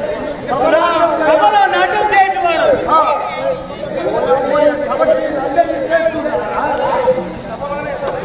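Speech: a raised voice delivering stage dialogue, with other voices chattering behind it.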